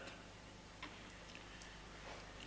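Quiet room tone: a steady faint hiss and low hum, with two small faint clicks around the middle.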